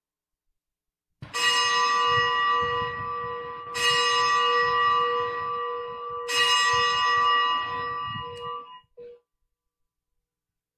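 A bell struck three times, about two and a half seconds apart, each strike ringing on with clear steady tones before being stopped near the end: the consecration bell rung at the elevation of the host during Mass.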